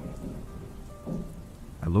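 Steady rain falling, with a low rumble of thunder about a second in.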